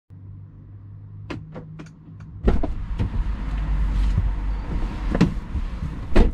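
Small sharp clicks, then, about two and a half seconds in, a loud low rumble with a few knocks as a person climbs into the driver's seat of a Mercedes-Benz SLK roadster.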